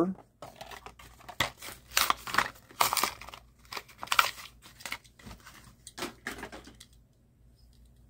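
Crinkling and tearing of a Hot Wheels blister pack, its plastic bubble and cardboard card being handled and opened by hand. The crackles are irregular and stop about a second before the end.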